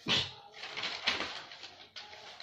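Paper rustling as a spiral notebook's pages are flipped over and handled on a clipboard, in a few quick bursts, the loudest at the very start and another about a second in.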